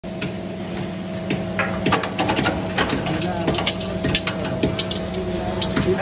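Belt-driven gond (edible gum) cutting machine running with a steady hum, with irregular sharp clicks and rattles from about two seconds in.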